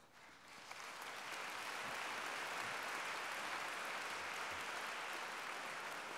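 A large audience applauding: the clapping builds over the first second or two, then holds steady and begins to ease near the end.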